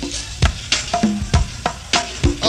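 Live band recording in a sparse percussion break: sharp drum hits a few times a second, some with short pitched drum tones, over steady tape hiss.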